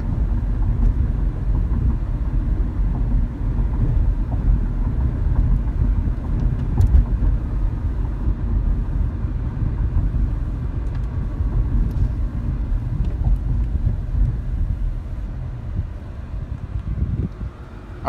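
Road and drivetrain noise heard inside the cabin of a 2012 Nissan Sentra 2.0 driving at around 30 to 35 mph: a steady low rumble with bumps. It grows quieter over the last few seconds as the car slows almost to a stop.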